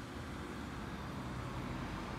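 A steady low mechanical hum over a background of outdoor noise, like an engine or traffic running somewhere off in the surroundings.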